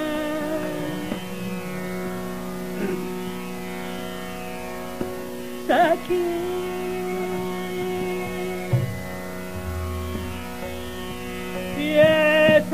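Hindustani classical vocal in raga Bageshree: a male voice holds long notes and slides slowly between them over a steady drone. There is a quick ornamented turn about six seconds in.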